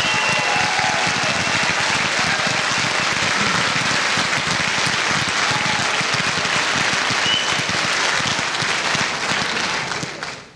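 A large audience applauding, a steady dense clapping that eases off in the last second or so.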